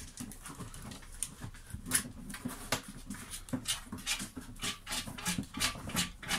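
Puppies scrabbling at and in a cardboard box: irregular, quick scratches, scrapes and clicks of claws and cardboard on a hard floor, with some small low dog sounds mixed in.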